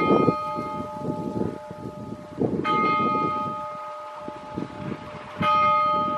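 Russian Orthodox church bells ringing: a larger bell is struck three times about 2.7 s apart, each stroke ringing on, with quicker strokes of other bells in between.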